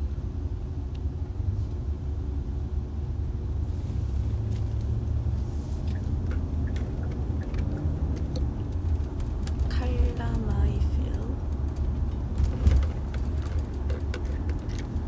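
Steady low rumble of a car heard from inside the cabin: road and engine noise. A short voice sound comes about ten seconds in, and a brief knock near the end.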